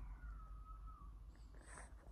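Near silence: quiet room tone with a steady low hum, and one faint, brief falling tone in the first second.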